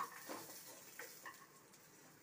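Chicken strips sizzling faintly in a frying pan, with a few light clicks of metal tongs against the pan as the strips are turned.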